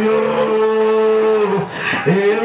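A singer's voice through a microphone and PA, holding one long steady note for about a second and a half over a lower sustained tone. The note breaks off near the end, and the voice glides upward into the next phrase.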